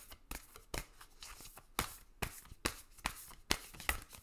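Tarot deck shuffled by hand: a soft rustle of cards broken by sharp slaps as packets are dropped from one hand onto the other, uneven, about two or three a second.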